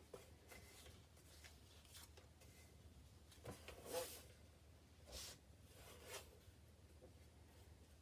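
Near silence: room tone, with a few faint, brief rustles a few seconds in.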